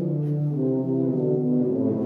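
Two tubas playing a Baroque duet, an allemande. A lower held note sits under a higher part that moves from note to note.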